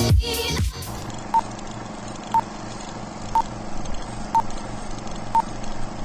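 An electronic dance track cuts off in the first second, then an old-film countdown leader sound effect: a steady hiss with a short, high beep once a second, five times.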